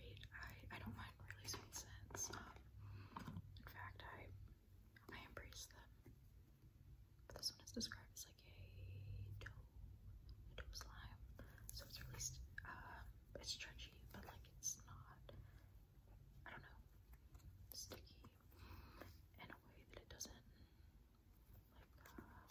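Faint whispering over soft, sticky clicks and crackles of slime being squeezed and pulled between the fingers.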